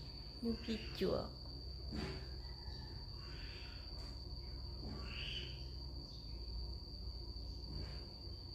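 Steady high-pitched trill of insects, unbroken throughout, over a low steady hum. A few spoken words break in about a second in.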